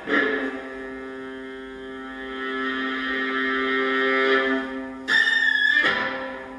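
Solo viola, bowed: a sharp accented stroke, then a long held low note with a higher note above it, slowly swelling louder. About five seconds in comes a loud, grainy, fluttering burst that dies away.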